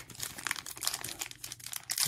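Foil trading card pack wrapper crinkling in the hands as it is worked open, a run of irregular dry crackles.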